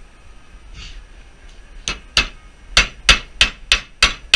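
Repeated hammer blows on metal, about three a second, starting about halfway in: an undersized 12-point socket being hammered onto a rounded-off bolt head on a front wheel hub and brake disc, to make it grip.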